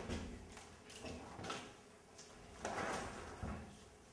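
A few soft bumps and rustles of a backpack being handled and of a performer shifting on a wooden stage floor, the loudest about three seconds in.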